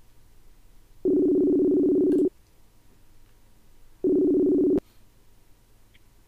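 Video-call app's outgoing ringing tone while the call connects: a steady beep of two notes sounded together, lasting just over a second, then about two seconds later a second, shorter beep that cuts off.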